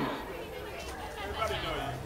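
Faint chatter from a crowd, several voices talking at once, over a faint low steady hum.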